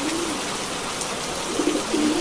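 A pigeon cooing, a low, bending call heard at the start and again near the end, over a steady hiss of rain.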